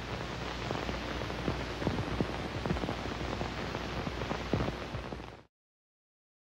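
Steady hiss and crackle of a worn vintage soundtrack, with no speech over it. It cuts off suddenly to silence about five and a half seconds in.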